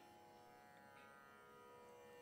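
Near silence over a faint, steady musical drone of held tones.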